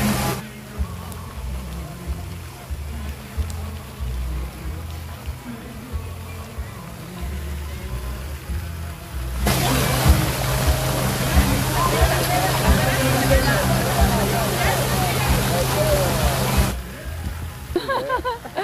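Water splashing from a park fountain, a steady hiss, under music with a moving bass line. From about halfway through, voices come in over it, until a cut shortly before the end.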